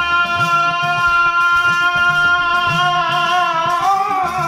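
A man's voice holding one long, steady sung note of a maulid chant over a repeating rhythmic accompaniment, amplified through a microphone.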